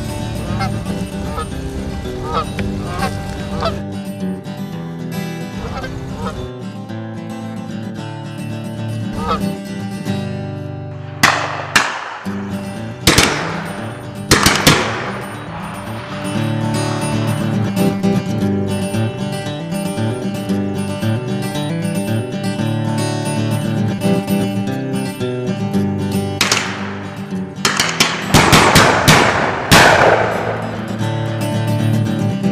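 Canada geese honking over background music, with loud shotgun shots: three a second or two apart around the middle, then a rapid volley near the end.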